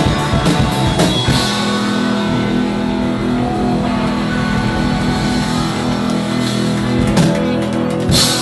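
Live rock band playing loud: electric guitars holding a sustained chord over drums and cymbals, with a few sharp drum hits near the end.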